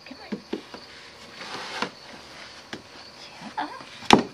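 A puppy's paws tapping and scratching lightly on wooden porch steps: a few scattered soft taps with faint rustling between them.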